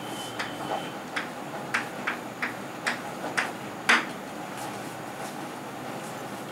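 Chalk writing on a blackboard: a run of sharp taps and short strokes, about ten over the first four seconds, the loudest near four seconds in.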